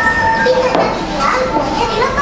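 A young child's voice chattering, with music playing underneath.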